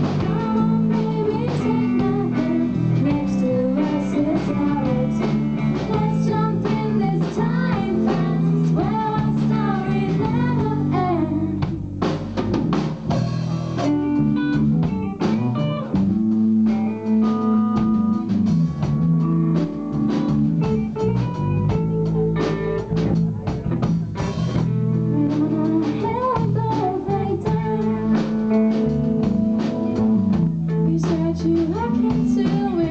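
Live indie rock band playing: female vocals over electric guitars and a drum kit. The singing drops out for a stretch in the middle while the guitars and drums carry on, then comes back near the end.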